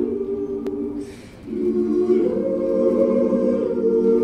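Mixed choir singing a cappella in sustained chords. The sound falls away briefly about a second in, with a breathy consonant, then a new chord comes in and moves higher.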